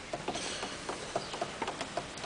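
A string of faint, light clicks and rustles, about four a second, in a quiet hall.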